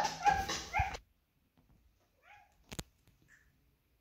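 A child making short, high dog-like yips and whimpers for about the first second, rising in pitch. These cut off abruptly into near silence, broken only by a faint squeak and a single sharp click.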